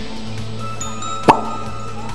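Background music of sustained electronic tones over a low hum, with a single sharp click a little over a second in.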